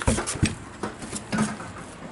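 Several sharp knocks and clicks as the wood chip box's door is fastened shut with its latch, the loudest right at the start and about half a second in.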